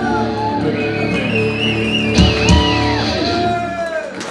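Live rock music from a one-man band: electric guitar holding sustained, wavering notes as the song winds down, with two kick-drum thumps a little past the middle. The music stops at the very end.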